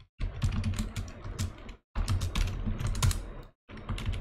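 Computer keyboard typing: runs of quick keystroke clicks, broken by a few brief silent gaps.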